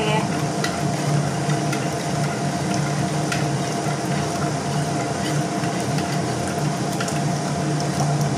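Steel ladle stirring in a clay pot of hot water as a thin wheat-flour batter is poured in, with a few faint clicks of the ladle, over a steady hiss and low hum.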